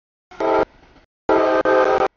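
CSX freight locomotive's multi-note air horn sounding for a road grade crossing: a short blast, then a longer blast beginning a little past halfway.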